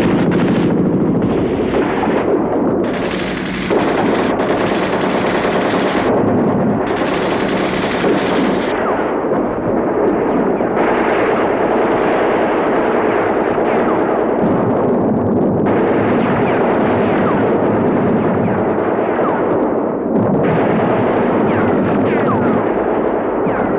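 Dense, unbroken battle gunfire: machine-gun bursts and single shots running together throughout, its tone shifting every few seconds.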